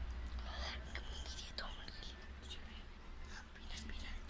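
Soft whispering: a few short, breathy, hissy sounds over a low steady hum.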